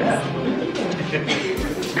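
Indistinct voices of people gathered in a room, with faint background music.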